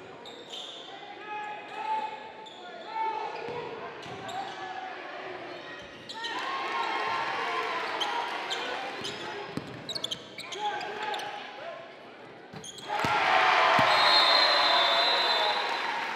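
Live sound of a basketball game in a gym: a basketball bouncing on the court and indistinct shouts from players and spectators. A louder surge of crowd noise comes about three seconds before the end.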